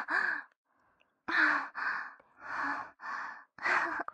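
A woman's heavy, breathy sighs and panting breaths, faintly voiced, about five in quick succession roughly every half second.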